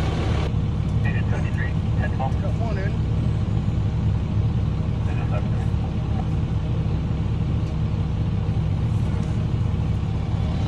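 Steady low rumble of a vehicle engine idling close by.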